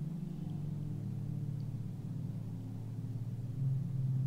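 Ambient meditation music: a low, sustained drone of held tones, with the lowest note changing about half a second in.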